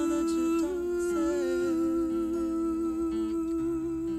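Female voices humming one long held 'ooh' in harmony, with acoustic guitar beneath.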